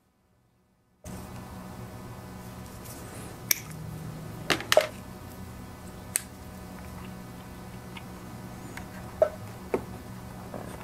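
Sharp clicks and snaps of pliers and cutters working on rubber fuel line: about six separate ones, the loudest a little before the middle and near the end. A steady low hum starts about a second in.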